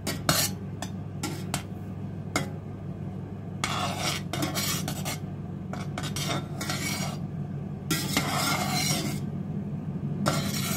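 Slotted metal spoon stirring milk in a stainless-steel saucepan, clinking and scraping against the pan: a few sharp clicks in the first couple of seconds, then longer swishing scrapes. The milk is being stirred gently for a minute to mix in the added cheese culture.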